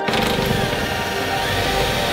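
Cordless drill running steadily, driving a screw, under background music.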